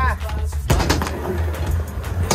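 Skateboard rolling on concrete, with a sharp clack a little under a second in as the board comes down.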